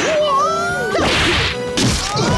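A shrill Bruce Lee–style martial-arts battle cry that rises in pitch, then a sharp whoosh of a kick about a second in.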